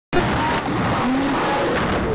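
Skateboard wheels rolling over wooden skatepark ramps: a steady rumbling roll with a few faint squeaks.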